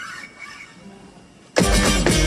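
A quiet opening, then about a second and a half in an acoustic guitar is struck hard: a loud percussive chord that rings on.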